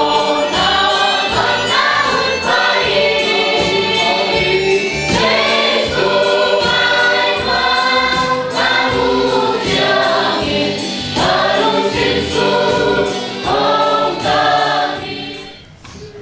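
A congregation singing a hymn together, a crowd of voices. The singing fades out near the end.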